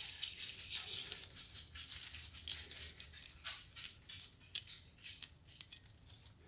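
Fingernails tapping and scratching on gold metal lattice ball string lights and rustling the artificial pine branches of a small Christmas tree: an irregular run of light clicks and rattles.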